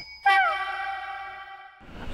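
A sound effect added in editing: a ringing, chime-like tone that slides down in pitch at first, then holds and fades for about a second and a half before cutting off.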